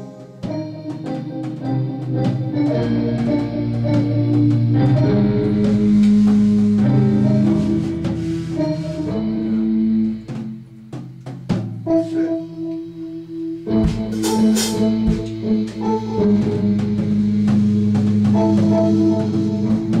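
Live band music: an electric keyboard playing sustained organ-toned chords over a drum kit. The music drops back briefly about halfway through, then comes in full again.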